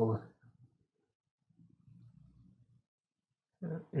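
A man's voice trails off at the start, followed by near silence with only a faint, low murmur around the middle, before he speaks again at the end.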